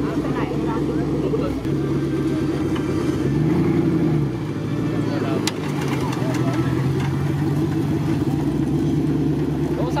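Engine of a modified off-road racing buggy running at idle, with one short rev that rises and falls about three and a half seconds in. A single sharp click is heard about halfway through.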